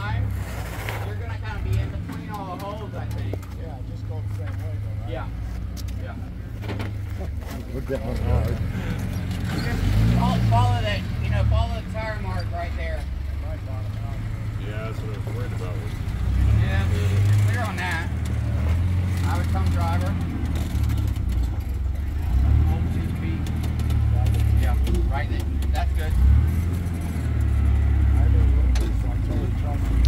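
1943 Willys MB's four-cylinder flathead engine running as it crawls over rock, its low note rising and falling, with people's voices talking over it at intervals.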